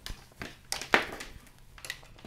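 A few knocks on a wooden desk as a boxy power supply is set down and its cable handled, the loudest about a second in.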